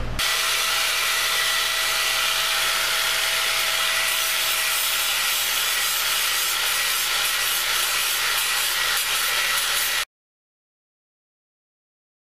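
Angle grinder with an abrasive disc running and grinding the surface of a cattle horn: a steady motor whine under an even grinding hiss. It cuts off suddenly near the end.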